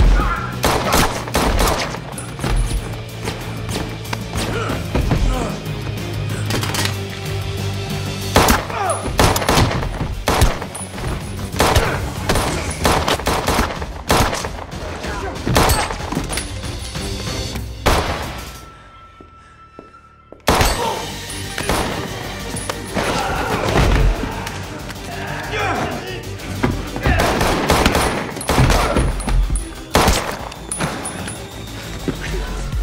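Action-film fight soundtrack: repeated handgun shots and hits of a close-quarters gunfight over a music score. The mix drops away for about two seconds about two-thirds of the way through, then comes back in.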